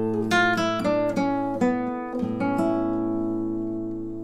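Classical guitar played fingerstyle: a short descending line of plucked notes, quickening and then slowing, resolving onto a held A major chord that rings and fades. The chord is a Picardy third, a major chord closing a passage in A minor.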